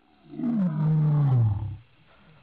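A lion roaring at night: one long, loud roar that falls steadily in pitch and lasts about a second and a half.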